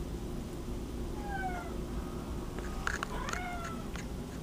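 Domestic cat meowing twice: a short call falling in pitch about a second in, then a second falling meow near the end, with a few sharp clicks around it.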